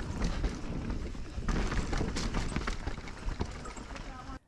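Norco Sight mountain bike rolling down a dirt trail: tyre noise over dirt and roots with irregular small knocks and rattles from the bike, over a steady wind rumble on the microphone.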